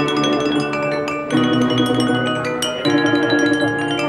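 Tuned water-filled wine glasses played as a glass instrument, sounding quick ringing notes of a melody over sustained lower chords that change about every one and a half seconds.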